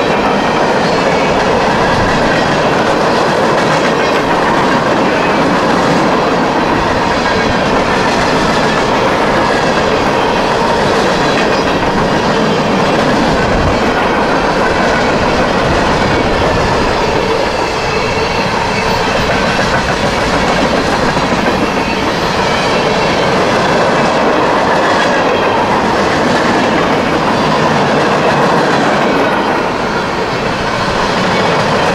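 Freight cars rolling past close by: the steady, loud rumble and clatter of steel wheels running on the rails as car after car goes by.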